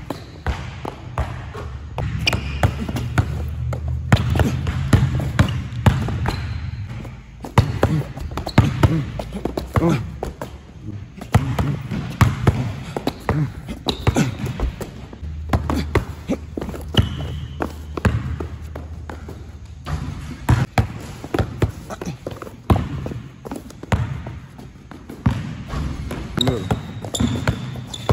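Basketball dribbled hard and fast on a plastic tile court floor: a quick, irregular run of bounces.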